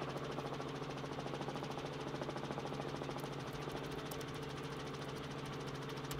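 Helicopter cabin noise heard through the reporter's open microphone: a steady engine and rotor drone with a fast, even pulsing beat.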